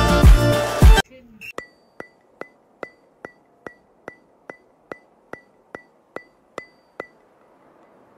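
Background music that cuts off suddenly about a second in, followed by a steady run of sharp, high ticks, about two and a half a second, evenly spaced like a clock, which stop about a second before the end.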